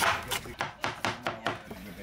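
Chef's knife chopping pineapple on a bamboo cutting board: a quick run of sharp knife strokes against the wood, several a second, the first the loudest.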